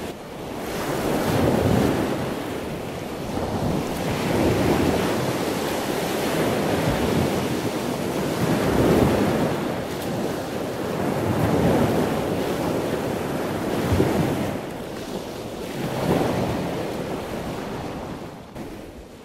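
Water surging and splashing, a rushing noise that swells and fades every two to three seconds, with wind noise on the microphone.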